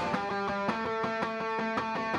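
Electric guitar picking a repeating run of notes, about five a second, each note ringing on. The full band with drums drops out just as it begins, leaving the guitar nearly alone.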